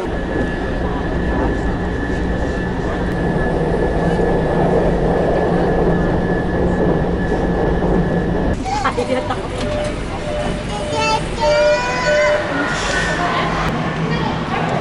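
Line 6 metro train running, heard from inside the car as a steady rumble with a steady hum and a thin high tone. About eight and a half seconds in the sound cuts to a platform, where tones rising in pitch come in a little later.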